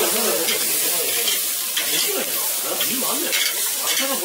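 Beef sizzling on a wire grill grate over glowing coals, a steady hiss with scattered small crackles.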